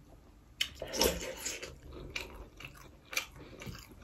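Close-up sounds of eating rice and curry by hand: wet chewing in separate bursts, the loudest about a second in.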